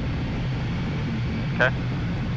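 Aero L-39 Albatros's Ivchenko AI-25TL turbofan idling, a steady low hum that does not change.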